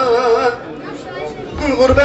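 A man singing a Turkish folk song (türkü) holds a wavering note that ends about half a second in. People chatter in the room during the pause, and the singing starts again near the end, with a few low thuds.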